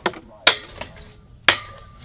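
Stunt scooter striking a small wooden kicker ramp and landing on a metal skatepark rail. A run of sharp knocks and clanks, with loud hits about half a second and a second and a half in, the second followed by a short ringing tone.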